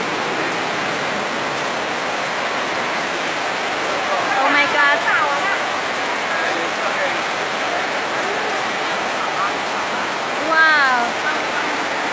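A steady rush of water: floodwater flowing fast across a street, with wavelets breaking over the road surface.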